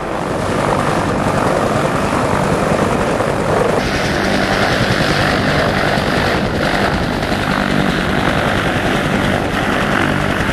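Coast Guard HH-65 Dolphin helicopter lifting off and climbing away, its turbine and rotor noise loud and steady.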